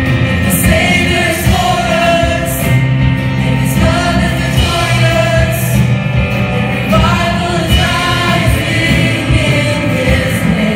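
Youth choir singing with keyboard accompaniment, the voices holding long sung notes.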